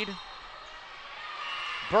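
Indoor gym ambience in a pause between a commentator's phrases: a low, even wash of crowd and room noise that slowly grows louder, with a faint thin high tone near the end, before the commentator's voice comes back.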